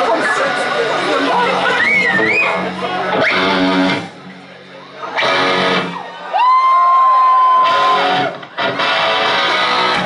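Amplified electric guitar played loosely in short strummed bursts, with a long held note that slides up and then holds, as the band checks whether it is in tune. Crowd voices and shouts are mixed in.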